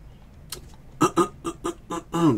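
A man coughing, a quick run of five or six short hoarse coughs starting about a second in.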